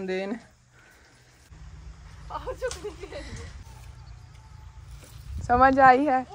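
Voices: a woman speaking briefly at the start and again near the end, with a fainter voice in between. Under them, from about a second and a half in, a steady low rumble of wind buffeting the microphone outdoors.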